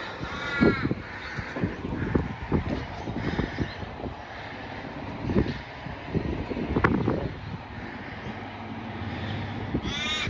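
A crow caws several times in quick succession in the first second, then falls silent. Low knocks and thumps and a wind-like rumble run underneath.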